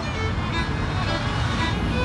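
Solo violin playing a few held notes over a steady low rumble of road traffic.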